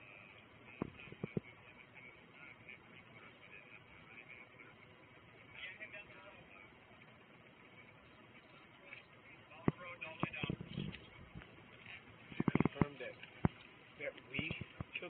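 Faint, indistinct voices, with scattered sharp clicks and knocks of a body-worn camera rubbing against gear. The knocks include a quick run of them about twelve and a half seconds in.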